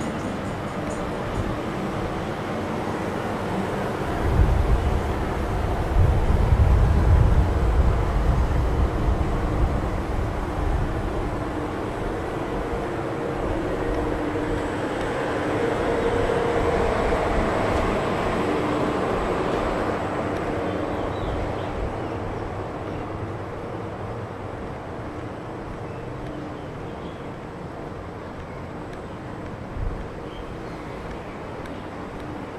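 City street traffic noise heard while walking. A strong low rumble swells about four seconds in and dies down by about eleven seconds, then a motor vehicle's sound rises and fades away again around the middle.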